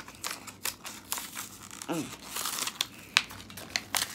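Packaging of a brush-on nail glue being handled and pulled at, giving a run of small clicks and rustles.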